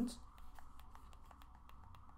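An iPhone 15 Pro Max's side buttons being pressed repeatedly through a protective phone case: a run of light, quick clicks, described as very clicky.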